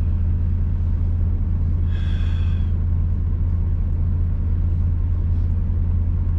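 Steady low drone of a semi truck's diesel engine idling, heard from inside the sleeper cab, with a brief higher-pitched sound about two seconds in.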